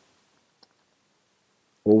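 Near silence with a few faint clicks of a stylus on a writing tablet, one a little clearer about half a second in; a man's voice resumes speaking near the end.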